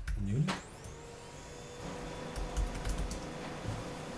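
Keys clicking on a computer keyboard as code is typed, in irregular strokes. A faint steady hum runs underneath.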